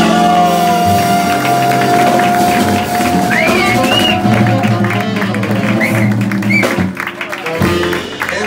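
Live jazz band with tenor saxophone, singing, upright bass and electric guitar, with one long held note through the first half.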